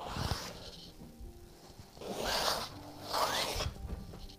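Watercolour stick scraping across a large stretched canvas in three long sweeping strokes, one at the very start and two in the second half.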